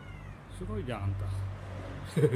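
A kitten meowing: one drawn-out call about half a second in.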